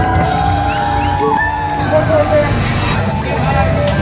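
Rock music from a band: sliding melodic lead lines over a steady bass.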